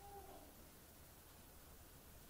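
Near silence: room tone with a steady low hum. There is one faint, short pitched call right at the start.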